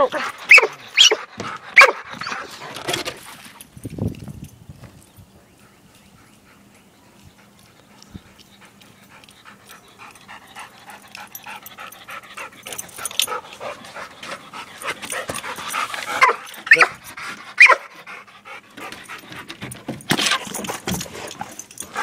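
Dog panting in loud, quick breaths close by at first. It fades away for several seconds, then grows louder again as the dog comes back near the end.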